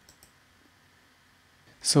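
Two faint computer mouse clicks just after the start, then near silence with only room tone.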